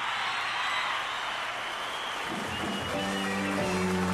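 Concert audience applause, then, about two and a half seconds in, a live band starts playing with held chords.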